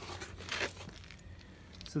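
Brief rustle of handling noise about half a second in, over a low steady background hum, as the handheld camera is swung about.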